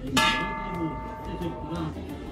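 A large cowbell struck once by hand-swinging its clapper, ringing out with several steady tones that die away over almost two seconds.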